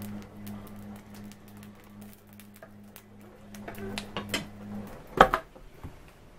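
Firewood crackling and snapping in the open firebox of a brick Russian stove, over a low steady hum that stops about five seconds in. Just after, the iron firebox door is shut with a loud metal clank, and a smaller knock follows near the end.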